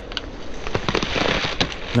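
Dry fallen leaves rustling and crackling with scattered small clicks and snaps, as someone clambers over a wire stock fence on a leaf-covered slope.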